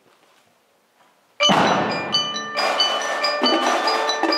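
Near silence, then about a second and a half in a percussion ensemble comes in with a sudden loud hit, followed by a run of ringing notes on marimbas and other mallet keyboards.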